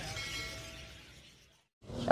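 A short sound effect from a subscribe-button animation: a ringing chime that fades out over about a second.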